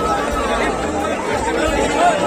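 Many people talking at once in a dense crowd: a steady babble of overlapping voices.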